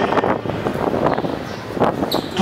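Wind noise on the microphone, an uneven rushing noise during a pause in speech.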